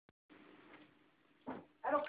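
Faint rustling swish of a large woven carpet being turned over and spread on a floor, with a brief louder sound about one and a half seconds in; a man's voice starts just before the end.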